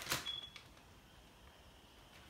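A plastic zip bag rustling for a moment as raw ground turkey is tipped out of it, then one short high-pitched electronic beep, then faint quiet.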